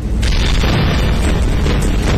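Television news sting: a boom sound effect laid over music, starting suddenly and staying loud, with heavy bass.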